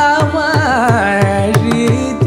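Carnatic vocal singing with sliding, ornamented pitch over a quick run of mridangam strokes, whose deep strokes drop in pitch, and a steady drone underneath.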